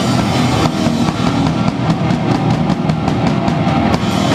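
Loud live power-violence punk band playing: distorted guitar, bass and drum kit together, with a fast, even run of drum hits through the second half.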